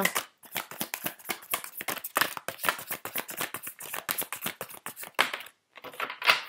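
A deck of large oracle cards being shuffled by hand: a quick, continuous run of papery card-on-card clicks and flicks, with a short pause near the end.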